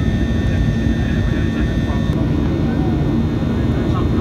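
Jet airliner cabin noise in flight: a loud, steady rumble of engines and airflow with a faint steady hum above it.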